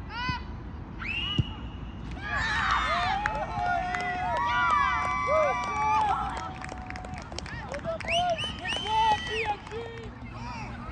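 A soccer ball kicked with one sharp thump about a second and a half in, followed by several seconds of children's high-pitched shouting and cheering over one another, the sound of young players celebrating a goal.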